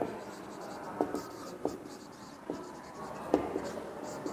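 Felt-tip marker writing on a whiteboard: the rubbing of the pen strokes, with four short sharp ticks as the tip strikes the board about one, one and a half, two and a half and three and a third seconds in.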